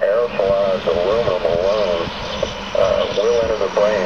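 A person's voice, speaking throughout, over a steady low hum.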